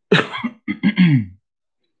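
A man coughing into his fist: a short run of quick coughs over about a second and a half.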